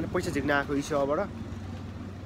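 A man talking to the camera, his voice strongest in the first second or so, over a steady low hum.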